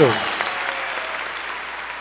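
Audience applause, slowly dying away.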